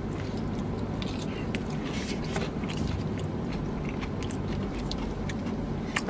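A person chewing a mouthful of peach cobbler close to the microphone, with scattered small wet mouth clicks, over a steady low hum inside a car.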